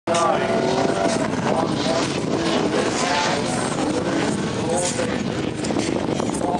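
Two drift cars' engines revving hard in a tandem run, the pitch climbing and dropping over and over.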